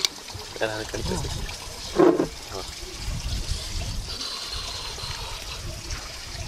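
A sharp click as a small screw-top jar lid is twisted open, then a steady low rumble of wind on the microphone with two short bursts of voice.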